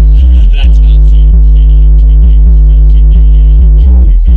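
Bass-heavy electronic music playing through a car stereo, with a Rockville RMW8A 8-inch powered ported subwoofer pushed hard and putting out a very loud, sustained deep bass, heard inside the car's cabin.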